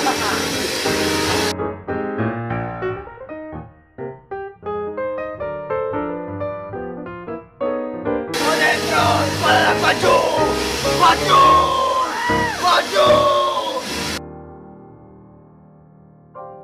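Piano music plays throughout, over a vacuum cleaner running in two stretches that cut off abruptly: at the start until about a second and a half in, and again from about eight to fourteen seconds. The vacuum is sucking ash out of a stove's ash drawer.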